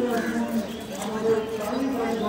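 A person's voice talking indistinctly.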